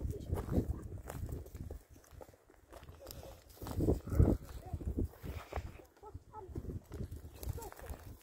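Footsteps crunching and knocking on loose stones, mixed with short snatches of voices; the loudest voice comes about four seconds in.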